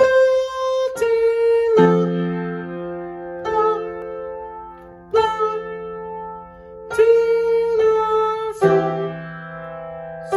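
Yamaha piano played slowly with both hands: single melody notes over held lower notes, about eight struck notes and chords spaced roughly a second apart, each left to ring and fade.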